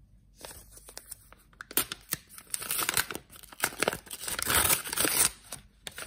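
A paper mailing envelope being torn open by hand: a run of ripping and crinkling paper that grows loudest about four to five seconds in.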